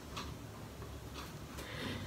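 A clock ticking faintly.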